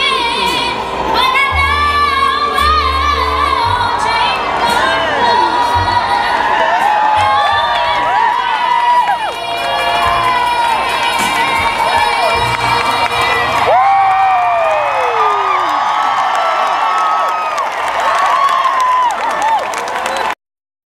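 Large crowd cheering and whooping, many voices rising and falling in pitch together, at the close of a girl's song.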